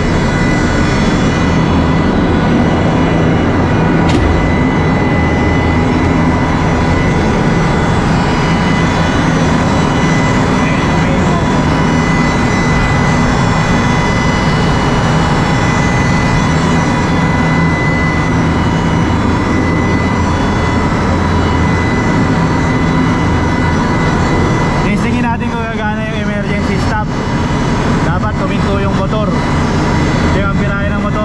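Ship's cargo crane's electric motor and hydraulic pump running at full speed, a loud steady hum with a thin high whine on top. The crane starting and running shows that the newly fitted emergency stop relay works.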